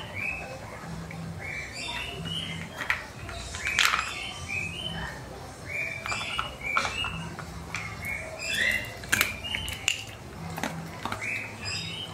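A dog crunching small dry biscuits from a plastic bowl, with scattered sharp crunches. A bird chirps in short repeated phrases in the background every second or two.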